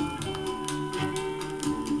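Early-1960s pop-soul record playing from a 45 rpm vinyl single on a turntable: a short instrumental stretch between sung lines, with a repeating bass line under sustained instrument notes.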